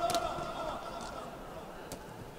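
Two sharp smacks of kickboxing strikes landing: a kick into the opponent's guard just after the start, then a punch on the gloves near the end. Voices call out steadily underneath.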